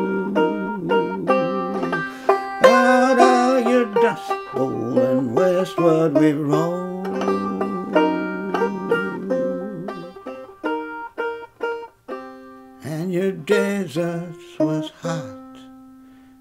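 Solo banjo picked in an instrumental break between verses, single notes ringing over chords. The notes thin out and fade about ten seconds in, stop almost completely near twelve seconds, then the picking starts again.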